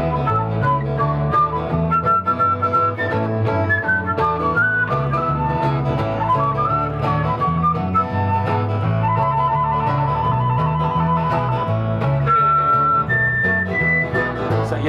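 Instrumental break in a live acoustic rock song: a flute plays a melodic solo, with a run of fast repeated notes a little past the middle and long held notes near the end, over a bass guitar line and guitar.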